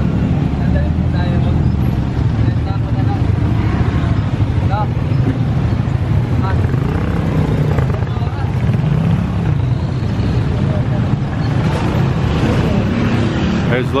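Close-by street traffic: motorcycles, motorcycle-sidecar tricycles and cars running slowly past in a queue, a steady low engine rumble.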